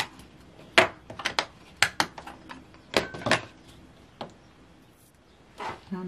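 Sharp, irregular clicks and taps of a clear acrylic stamp block and rubber stamps being handled and set down on a wooden tabletop, thickest in the first three seconds, with a last tap a little after four seconds.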